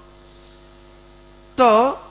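Steady electrical hum through the microphone's sound system, a stack of low even tones. About one and a half seconds in, a man speaks a single word.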